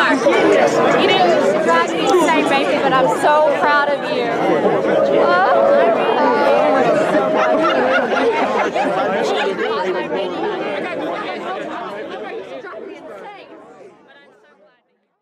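Many people talking at once, an overlapping chatter of a group standing close together. It fades out steadily over the last few seconds.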